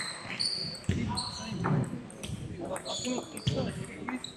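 Indistinct voices in a large, echoing sports hall, with a couple of sharp knocks of table tennis balls, about a second in and again near the end.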